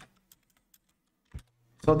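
A few faint, scattered keystrokes on a computer keyboard while a query is typed, with one stronger click about a second and a half in.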